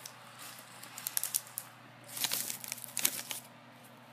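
Crisp crackling and crinkling of freeze-dried astronaut ice cream and its pouch being handled: scattered crackles about a second in, then a dense burst of crinkling from about two to three and a half seconds in.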